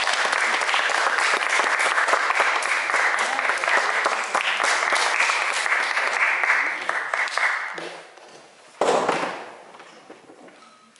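Audience applauding, a dense run of clapping that dies away about eight seconds in. About a second later comes one short, loud rush of noise that fades quickly.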